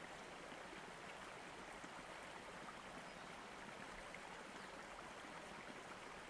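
Faint, steady running-water ambience, a stream-like rush that does not change.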